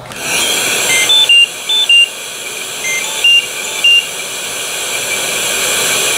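Philips Respironics Trilogy 100 ventilator's alarm: two runs of short beeps stepping between several pitches, about two seconds apart, over a steady rush of air from the disconnected breathing circuit. The alarm signals low inspiratory pressure and circuit disconnect.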